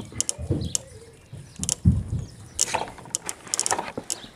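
Homemade dancing-water solenoid valve, driven from an amplifier's music signal, clicking open and shut at an irregular rhythm as it lets out short spritzes of water.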